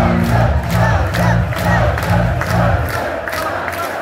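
A crowd in a club shouting and cheering over a live band's closing sound. The band's low sustained notes stop about three seconds in, leaving only the crowd.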